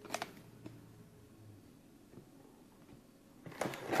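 A few faint, light clicks and rustles of trading cards being handled, mostly in the first second and a half.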